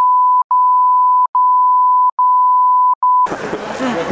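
A steady electronic beep at one pitch that replaces all other sound, broken by a short gap with a click at each edge about once a second. It cuts off about three seconds in, and crowd talk comes back.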